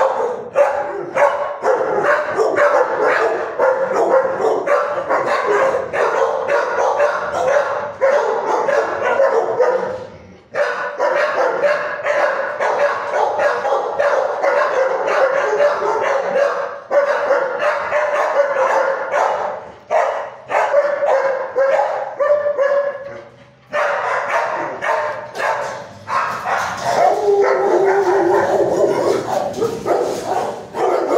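Several shelter dogs barking over one another almost without a break, in a kennel ward with concrete floors and block walls. The barking dips briefly twice, about ten seconds in and again about twenty-three seconds in.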